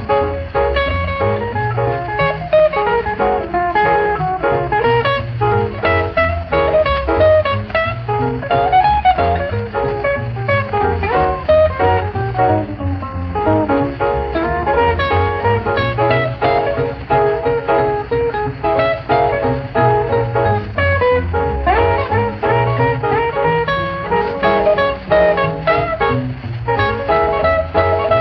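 Instrumental break of a 1947 boogie-woogie rhythm-and-blues trio record: piano, upright bass and guitar playing a swinging boogie rhythm, with no vocal.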